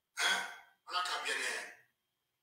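Speech: a voice in two short bursts, the first about half a second long and the second about a second long.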